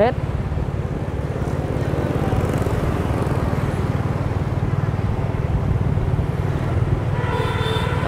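Steady low rumble from riding a motorbike through city traffic: the bike's engine and road noise, with a fine rapid flutter in it, running evenly for several seconds.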